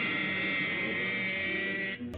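Orchestral cartoon score holding a sustained brass chord, steady throughout.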